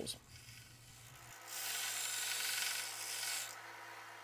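Harbor Freight Central Machinery 1x30 belt sander running with a steady motor hum while a small workpiece is pressed against the belt on the platen. A hissing grind sounds for about two seconds in the middle, then eases off.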